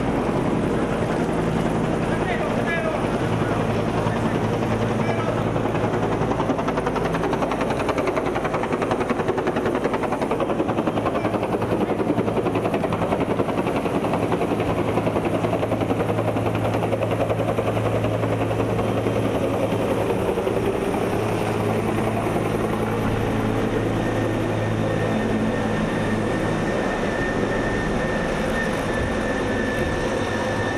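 A helicopter running steadily, with voices over it.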